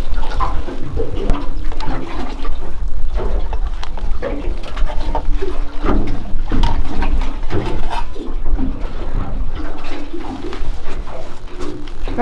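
Water slapping and sloshing against the aluminium hull of a boat at rest, with irregular short knocks.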